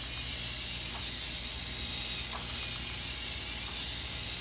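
VEX IQ V-Rex walking robot running forward, its single motor and plastic gear train giving a steady mechanical whir as the legs step.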